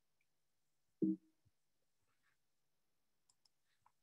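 Mostly quiet room tone, broken about a second in by a brief voiced murmur, then a few faint computer-mouse clicks near the end as the slides are being advanced.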